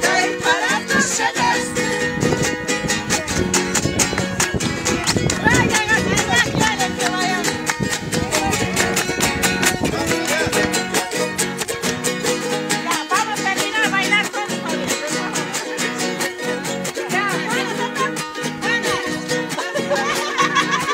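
Charangos and other small string instruments strummed fast and evenly in a carnival dance tune, with voices singing and calling over the music at several points.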